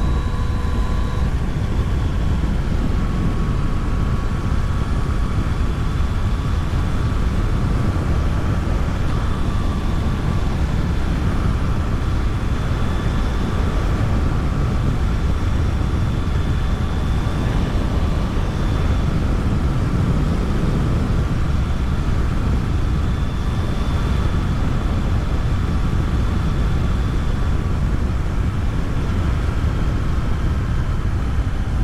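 Yamaha Tracer 900 GT's three-cylinder engine and wind rush while cruising at steady road speed, a constant heavy low rumble with a faint steady whine over it that shifts slightly in pitch about a second in.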